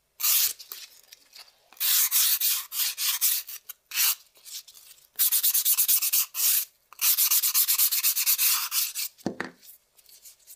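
Hand nail file rasping across acrylic nails in fast back-and-forth strokes, in several runs with short pauses between them, taking the sharp edges off the newly applied acrylic.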